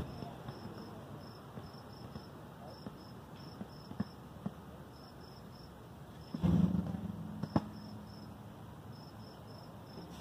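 Crickets chirping in an even, repeating rhythm of short high pulses. A few faint clicks and a short louder sound with a low pitch come about six and a half seconds in.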